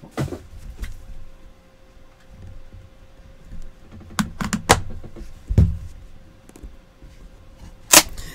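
A National Treasures trading-card hobby box being handled on a desk: a scatter of short knocks and clicks as it is pressed, worked at and lifted, the sharpest just before the end.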